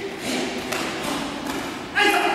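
Soft thuds and shuffling of bare feet and gi-clad bodies on gym mats as one karateka takes his partner down to the mat. A loud voice starts up right at the end.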